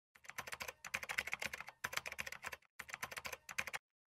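Rapid typing on a keyboard: a fast run of keystrokes with a short break a little past halfway, stopping just before the end.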